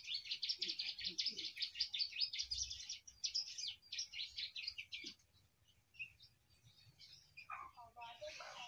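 Caged songbird singing a fast, continuous run of high, repeated chattering notes in the 'ngebren' style for about five seconds. It then breaks off into a few scattered notes and falls quiet, starting up again right at the end.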